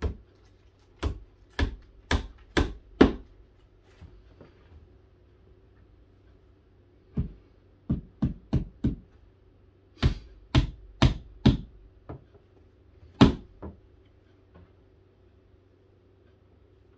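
Hammer tapping nails into the wooden panels of a cubby organizer, in quick runs of four or five strikes separated by pauses of a few seconds.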